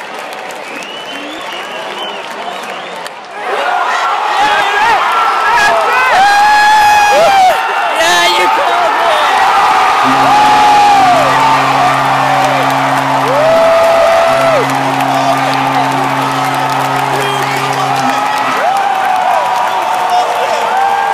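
Stadium crowd erupting into loud cheering about three and a half seconds in for a home run, with shouts and whoops from fans close by. From about ten seconds a low steady tone sounds twice, several seconds each.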